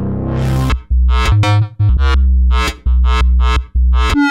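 Arturia MiniFreak hybrid synthesizer playing a preset. A sustained, hissy pad chord dies away within the first second. Then comes a rhythmic run of short, bass-heavy chord stabs.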